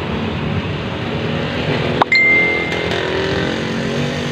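A single clear clink on a glass mug about halfway through, ringing on as one high tone for about a second, over a steady low background rumble.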